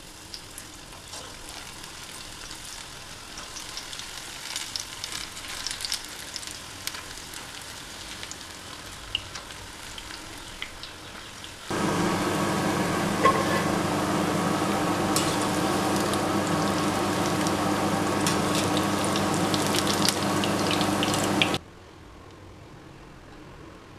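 Okra pakodas deep-frying in hot oil in a steel kadai: a sizzle with scattered crackles and pops. About twelve seconds in, a much louder, denser sizzle starts suddenly, with a steady hum beneath it, and cuts off abruptly just before the end.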